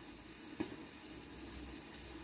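Faint, steady sizzle of trout frying in olive oil under a glass lid, with a single light click about half a second in.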